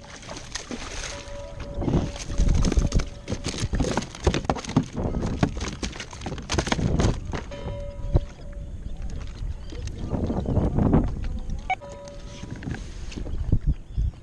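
A hooked bluefish splashing at the surface beside a kayak and being hauled aboard: irregular splashes, water slaps and knocks against the hull.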